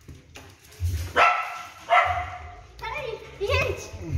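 A dachshund barking a few short barks, about a second apart.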